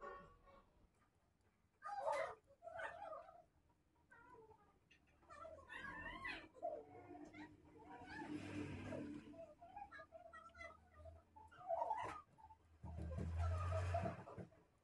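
A cat meowing faintly several times, each call bending up and down in pitch. A low, noisy rumble swells twice, the louder one just before the end.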